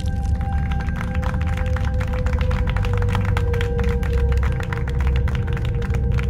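Scattered hand-clapping from a small group, irregular claps several times a second, over a music score of long held tones and a deep low rumble.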